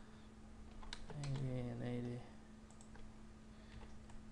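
Light computer keyboard and mouse clicks as parameter values are typed in, a few sharp taps about a second in and again near three seconds. About a second in, a man's voice holds one drawn-out hesitation sound for about a second.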